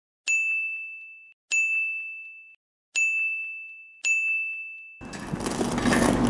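Four clear bell-like dings, one about every second and a quarter, each ringing out and fading over about a second. About five seconds in a faint room hiss takes over.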